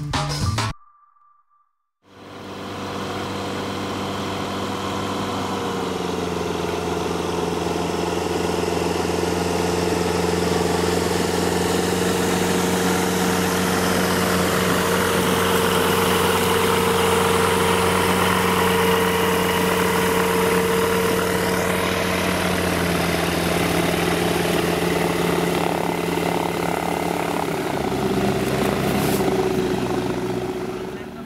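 After a brief snatch of music and a second of silence, the four-cylinder Rotax engine and propeller of an Aquila A210 light aircraft landing at low power. The steady drone grows louder as the plane comes in and rolls past, dropping slightly in pitch twice, and fades a little as it rolls away down the runway.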